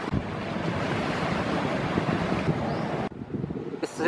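Wind buffeting the microphone over the steady wash of sea surf, a continuous rushing noise that drops away sharply about three seconds in.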